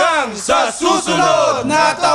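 Several men cheering and yelling together, in loud overlapping shouts, right after a song's final chord dies away.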